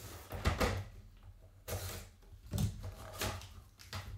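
A small cardboard box being handled on a tabletop: several knocks and scrapes as it is pulled over and its flap lid opened, with hard plastic graded-card slabs shifted inside it.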